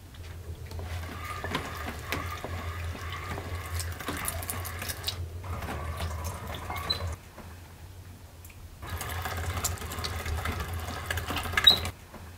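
Hand-cranked meat grinder mincing raw beef: a steady, rhythmic grinding as the crank turns. It stops for about a second and a half past the middle, starts again, and ends with a sharp click.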